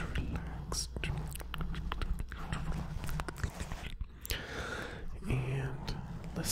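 Close-miked ASMR mouth sounds: wet lip smacks, kisses and clicks made with the lips against a foam microphone cover, mixed with breathy inaudible whispering. A longer breath comes about four seconds in.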